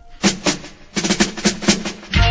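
Reggae drum fill on a drum kit: a couple of drum hits, then a quicker run of strikes through the second half.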